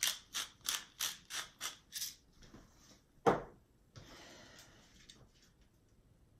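Pepper mill grinding pepper: a run of quick, evenly spaced grinding strokes, about three a second, that stops about two seconds in.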